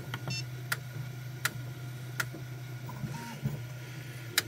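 Prusa Mini 3D printer running with a steady hum, and a sharp click about every three-quarters of a second from the extruder skipping, which points to a nozzle temperature too low for this PLA+ to flow. A short rising tone from the printer's motors sounds about three seconds in.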